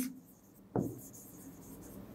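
Marker pen writing on a whiteboard. A sharp tap as the tip meets the board comes just under a second in, then faint scratching of the letter strokes.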